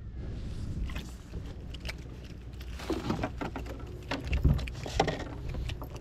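Irregular knocks and rustling as a freshly landed fish is handled on a plastic kayak deck and gripped in a towel to be unhooked, with the loudest knocks a few seconds in.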